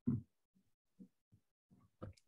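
Faint, gated voice over a video call: a short spoken syllable at the start, then a few brief, low murmurs that cut in and out.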